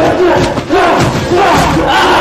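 Several men shouting and yelling over one another during a brawl.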